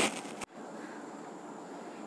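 Faint steady background hiss, room tone with no distinct sound event; a woman's voice breaks off with a small click in the first half second.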